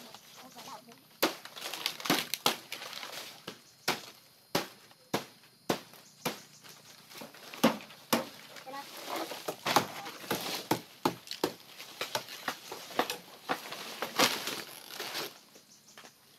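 Dry palm fronds rustling and crackling, with sharp snaps and knocks at irregular intervals throughout, as the leaves are cut and handled.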